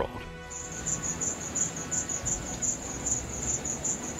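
Insects chirping in a high, evenly pulsed trill of about five or six chirps a second, starting about half a second in.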